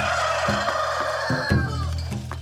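A single long animal call, held for almost two seconds and falling in pitch as it ends, over background music.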